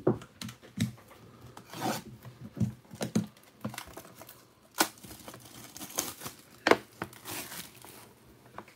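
Plastic shrink wrap being torn and peeled off a trading-card hobby box, crinkling, with irregular sharp crackles; the loudest rips come a little before the middle and again near the end.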